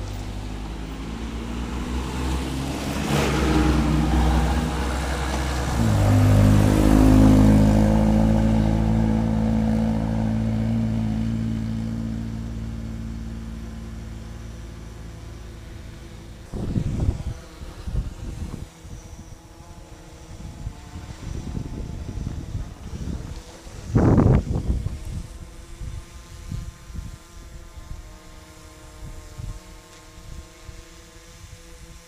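Cars driving past close by, their engines swelling to a peak about four seconds in and again about seven seconds in, then fading away. Later come a few short, sudden bursts of noise, the loudest near the end.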